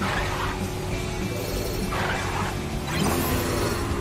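Video game background music, with short noisy crash-like sound effects over it at the start, about two seconds in and about three seconds in.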